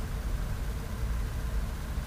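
Steady low rumble with an even hiss over it: outdoor background noise picked up by the Onda V820W tablet's built-in microphone.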